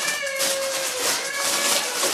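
Aluminium foil crinkling and rustling as a foil-wrapped gift is handled and unwrapped. Over it, two long, high, drawn-out voice-like tones, the first sliding down at its end.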